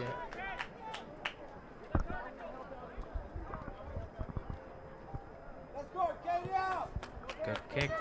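Open-air field ambience at a soccer game: faint shouts and calls from players, heard early and again near the end, with a dull thud about two seconds in.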